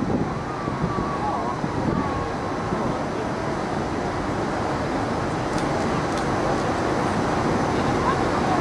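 Steady low background din, with faint distant voices in the first couple of seconds.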